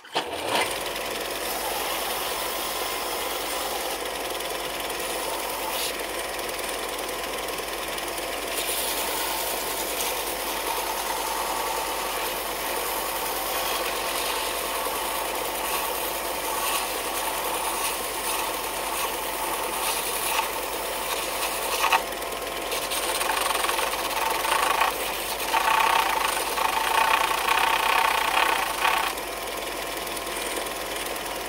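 Craftsman belt-and-disc sander switched on right at the start and running steadily, with a small cedar ring held against the moving sanding belt; the sanding gets louder and rougher near the end.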